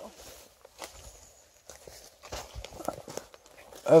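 Quiet, irregular footsteps crunching on dry leaf litter and twigs on a forest floor, a handful of light crackles spread unevenly.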